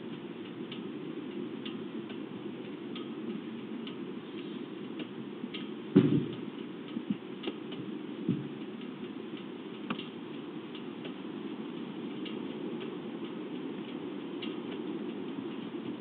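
Steady low hum with faint, irregular light ticks. One sharp knock comes about six seconds in, followed by a few softer knocks over the next few seconds.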